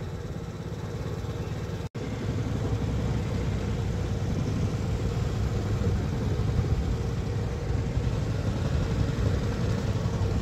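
Motorbike engine running steadily at low speed as it rides along a street. The sound cuts out for an instant about two seconds in.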